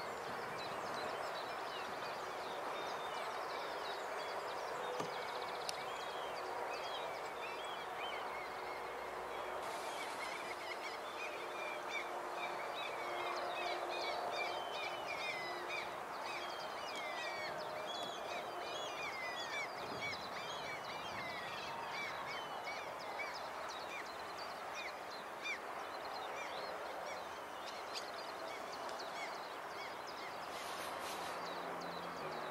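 Small birds chirping and singing in many short, quick rising and falling notes, growing busier about a third of the way in, over a steady, quiet outdoor background hum.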